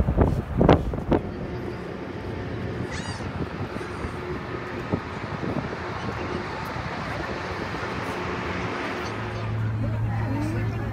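Outdoor background noise with faint, indistinct voices of people nearby. There are a few loud low bumps in the first second, and a low steady hum comes in near the end.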